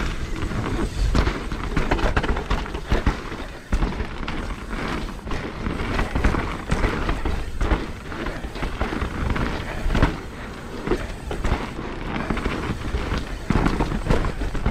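Downhill mountain bike descending a rough dirt and rock trail: tyres crunching over the ground, with frequent sharp knocks and rattles as the bike hits bumps, over a steady low rumble of wind on the microphone.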